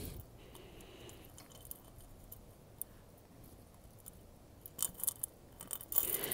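Faint clicks and light clinks of small metal jewelry pieces being handled, with one tick about three seconds in and a quick run of them near the end.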